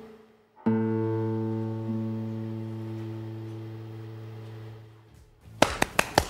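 Classical guitar: a chord struck about 0.7 s in and left to ring, fading slowly for over four seconds as the closing chord of the piece. Scattered hand clapping begins near the end.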